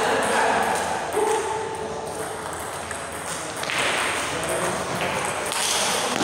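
Table tennis ball clicking off the bats and the table during play, with voices in the hall.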